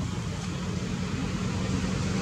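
Steady low hum of a running engine.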